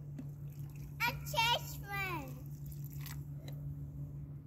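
A child's high voice calling out briefly about a second in, over a steady low hum.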